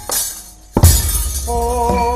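Gamelan accompaniment for a wayang kulit fight scene. After a brief lull, a sharp crash of the dalang's metal kecrek plates lands with a deep drum stroke about a second in, followed by steady ringing tones of bronze metallophones.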